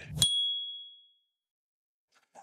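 A single bright ding: a sharp onset and one pure, high chime that fades away over about a second, then dead silence. It is an editing sound effect marking the cut to a new section's title card.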